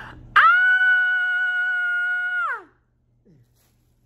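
Edited-in cartoon sound effect: a single held whistle-like tone that swoops up at the start, holds steady for about two seconds, then slides down, followed by a short falling blip.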